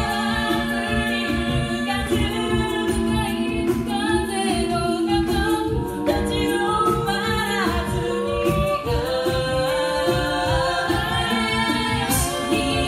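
Six-voice female a cappella group singing in harmony into microphones, held chords moving over a steady low rhythmic beat.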